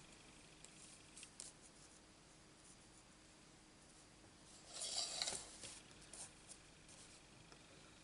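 Faint handling noise of card stock being slid and arranged over metal cutting dies on a plastic die-cutting plate, with a few light ticks and a short rustling scrape about five seconds in.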